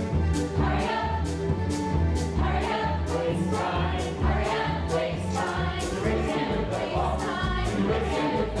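Ensemble chorus singing an upbeat big-band show tune with a live pit band, over a steady beat.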